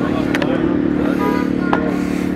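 Steady low engine hum, like an engine idling nearby, with a couple of faint clicks.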